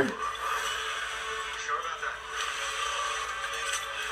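Movie-trailer soundtrack played back through a speaker in a small room: a held, droning music bed, thin with little bass, under a line of film dialogue.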